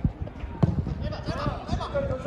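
A football being kicked on a grass pitch: two sharp thuds about half a second apart near the start, amid players' distant shouts.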